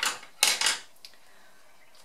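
A handful of plastic-barrelled markers and wooden coloured pencils set down on a wooden table, clattering twice within the first second.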